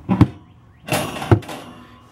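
Two sharp knocks a little over a second apart, with a brief scraping between, from the metal racks or wood-chip tray inside an electric smoker being handled.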